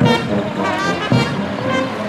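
Brass band music: brass instruments playing a tune in held, changing notes.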